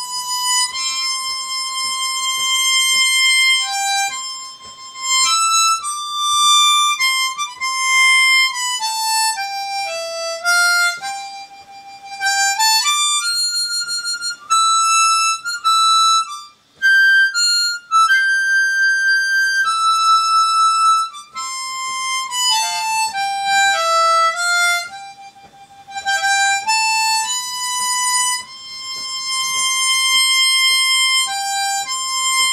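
Solo harmonica, cupped in both hands, playing a slow melody of long held single notes. The line sinks low around ten seconds in, climbs high through the middle, sinks again past twenty seconds and rises near the end, with a short break about seventeen seconds in.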